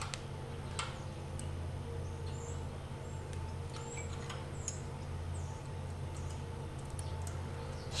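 Steady low hum with a few faint, short metallic clicks from wrenches on an exhaust valve tappet's adjusting screw and lock nut as the valve lash is reset from slightly too tight.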